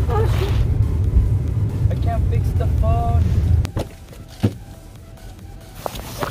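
Low, steady rumble of a car heard from inside the cabin while driving. It stops abruptly about two-thirds of the way through, and a single sharp knock follows.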